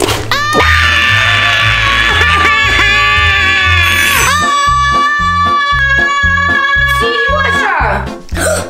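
An adult woman imitating a baby's cry: long, loud, high-pitched wails that break off once and start again about four seconds in. Background music with a steady beat plays underneath.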